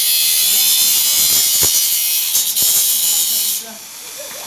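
Handheld angle grinder's disc biting into steel square tubing, a loud, steady, high grinding hiss that stops about three and a half seconds in.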